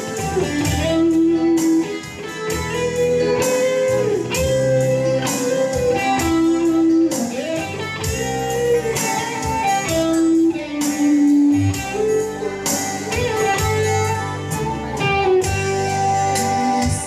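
Instrumental break in a slow gospel song: a guitar plays the melody, with a few bent notes, over bass and a steady beat.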